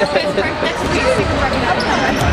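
Many voices chattering in a large, echoing sports hall, with a basketball bouncing on the hardwood court.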